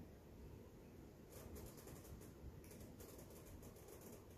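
Near silence: room tone with a few faint, soft ticks in the second half.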